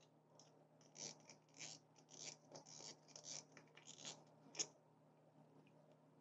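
Faint small clicks and scrapes as the spool is taken off a Daiwa Gekkabijin X LT1000S-P ultralight spinning reel, with one sharper click near the end.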